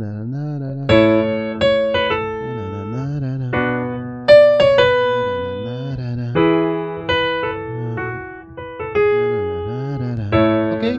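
Electronic keyboard on its piano voice playing chords with short ornamental runs, about a dozen struck notes and chords that each fade out after the strike.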